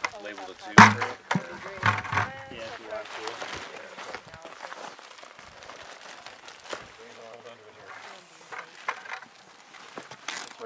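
Indistinct talk between people, loudest in the first couple of seconds, then quieter and scattered, with a few faint knocks.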